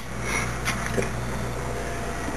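Faint clicks and rubbing as hands handle components inside an open desktop computer case, over a steady low hum.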